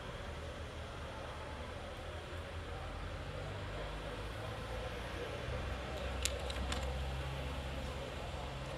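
Low engine hum of cars moving slowly through a hall, growing louder in the second half as a supercharged 2005 Mini Cooper S convertible drives in. A few sharp clicks come just past six seconds.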